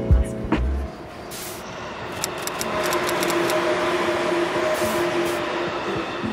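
The intro music cuts off about a second in. After that an electric train runs with a steady whine over rolling noise that swells and then eases.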